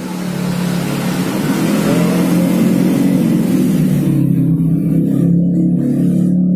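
A motor vehicle engine running, loud and steady, with a hiss over it that fades about four seconds in.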